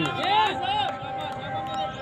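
A man's voice calling out briefly in the first second, over a few steady held tones in the background.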